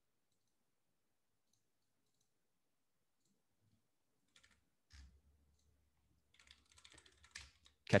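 Near silence, then a few faint clicks and, in the last couple of seconds, a quick run of soft computer-keyboard taps.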